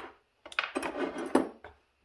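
Small metal chainsaw parts clinking and rattling against each other as a piston is picked up off a workbench. There are a few sharper clicks in a clatter lasting just over a second.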